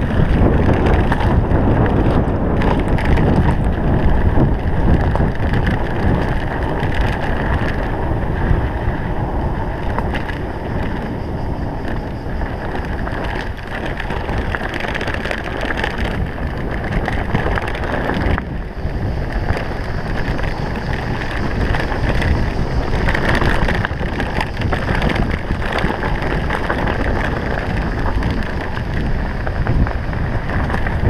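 Bicycle riding over a rough dirt trail, heard from an action camera on the rider: a steady rush of wind on the microphone mixed with constant rattling and knocks from the bike over the bumpy ground.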